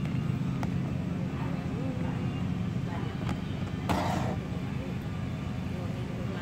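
Steady low background hum, with a few light clicks and a short rustle about four seconds in as a bicycle saddle on its cardboard and plastic retail packaging is handled.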